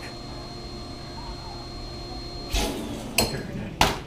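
Household vacuum cleaner humming steadily with a faint high whine that stops after about three and a half seconds, broken by three sharp clunks as the machine and hose are handled, the loudest near the end.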